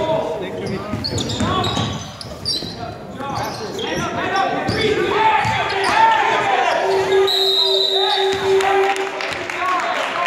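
Basketball game play on a hardwood gym floor: a ball bouncing, sneakers squeaking, and players and spectators calling out, all echoing in a large gym. A steady held tone sounds for about two seconds in the second half.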